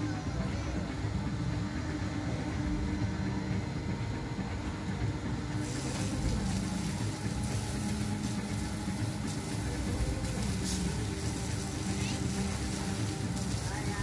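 Steady low mechanical hum from a pendulum swing ride's drive machinery as its gondola swings low, with indistinct voices. A hiss joins about halfway through.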